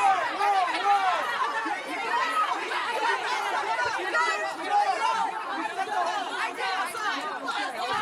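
A group of people shouting and yelling over one another at once, a continuous jumble of overlapping voices with no clear words, during a shoving scuffle.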